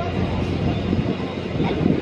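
Crowd noise at a soccer match: a steady din from the spectators with scattered shouts, over a low, even rumble.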